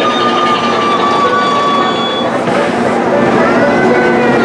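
Big Thunder Mountain Railroad mine-train roller coaster rolling along its track: a steady rumble of wheels on rails with a high, steady squeal that falls slightly in pitch over the first two seconds.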